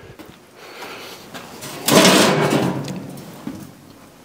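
A single heavy metal clunk about two seconds in, ringing briefly as it dies away, as the Ford 4000 transmission's input shaft and bearing are driven out of the housing.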